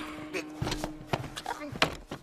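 Film soundtrack: several sharp knocks and thuds over a faint steady hum that fades about halfway through, with brief bits of voice.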